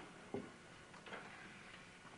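Faint tableware sounds at a breakfast table: one light knock about a third of a second in, then a soft brief rustle.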